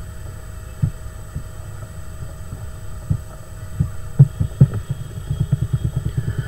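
Soft low thumps from handling the computer while text is selected and recoloured, picked up by the microphone: a few scattered bumps at first, coming thick and fast from about four seconds in, over a faint steady electrical hum.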